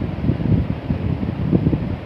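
Uneven, low rumbling background noise with a faint hiss above it, like wind or a machine picked up by the microphone.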